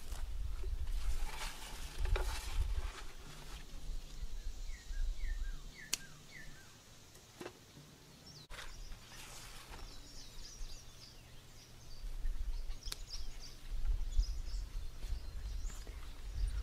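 Cucumber vines rustling as they are pushed aside, with a few sharp snaps as the cucumber is cut free. A low wind rumble on the microphone runs underneath, a bird gives four short falling notes in the middle, and faint high chirps follow.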